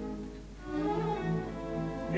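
Opera orchestra's strings playing between sung phrases. A held chord dies away at the start, and about half a second in the violins and cellos come in again with a low sustained note under a short melodic line.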